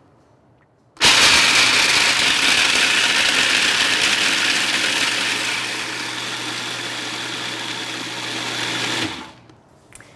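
Food processor running, grinding toasted almonds into a fine powder. It starts suddenly about a second in, eases a little in level partway through, and stops about a second before the end.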